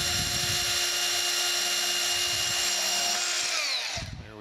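Cordless portable band saw cutting through brass rod stock held in a bench vise, its motor running at a steady pitch. Near the end the cut finishes and the motor winds down, falling in pitch.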